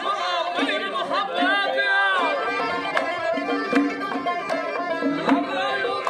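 Live Khorezmian folk music: accordion and plucked long-necked lutes with a singing voice in wavering, ornamented lines, and sharp drum strokes about every three-quarters of a second in the second half.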